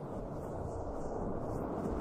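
A low rumble from an intro sound effect, slowly swelling.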